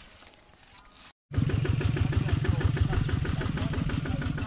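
After a brief cut about a second in, a walking tractor's small engine runs steadily with a fast, even chugging beat.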